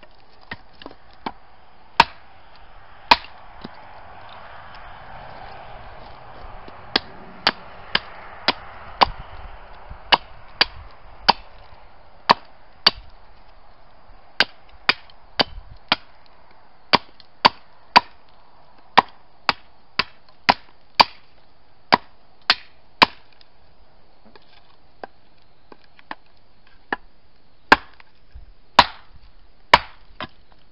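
A hand-forged tomahawk chopping a dead piñon pine branch on a wooden stump: dozens of sharp chops, often about two a second, with fewer and lighter hits near the end.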